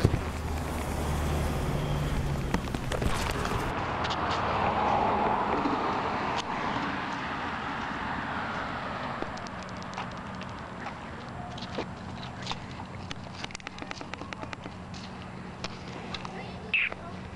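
A car passing on the street, its noise swelling and then fading over several seconds, followed by footsteps with scattered sharp clicks and crackles.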